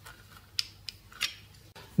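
A charger plug's pins pulled out of a plastic universal travel adapter while the plugs are handled: three light plastic clicks.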